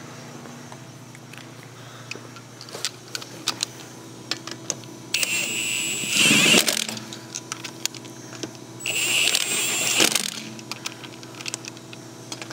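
Cordless impact wrench running lug nuts onto a car wheel: two loud bursts of hammering, each about a second and a half long, around five and nine seconds in. Before them come a few light metallic clicks of nuts and socket being handled.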